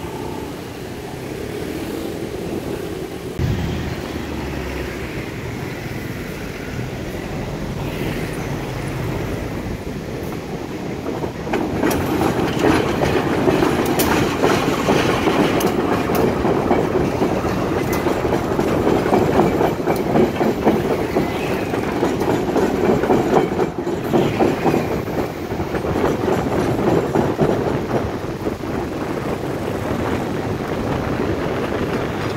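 Diesel locomotive running slowly past with a train of flat wagons: a steady engine rumble at first, then from about twelve seconds in the sound grows louder as the wheels clack rapidly on the track while the wagons roll by.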